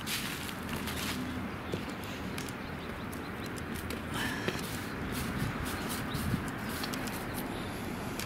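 Footsteps on an asphalt street and outdoor street ambience with a steady low rumble, irregular short scuffs and clicks throughout. A brief bird call comes about four seconds in.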